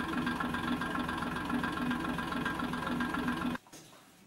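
A steady mechanical drone like an engine running, with a slight pulsing. It cuts off abruptly near the end.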